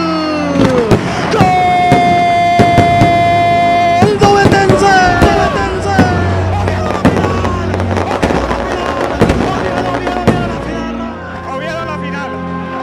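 Firecrackers going off in irregular sharp bangs, roughly one or two a second. Over them run loud pitched sounds: a falling glide at the start and one long held note in the first few seconds.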